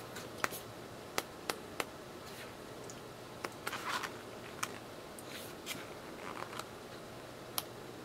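Pages of a 6 by 6 paper pad being flipped by hand: soft paper rustles with a few light clicks, mostly in the first two seconds.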